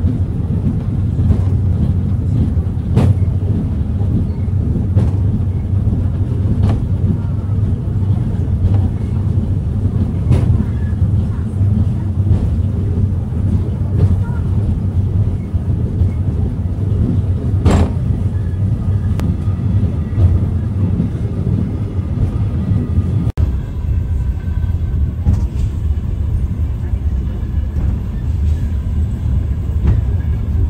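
Eizan Cable funicular car running downhill, heard from inside the cabin as a steady low rumble with a few sharp clicks from the wheels on the track.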